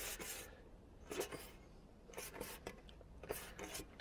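Faint rubbing and scraping of hands working along the edge of a black roof flashing strip as it is bent forwards, in about four short scrapes roughly a second apart.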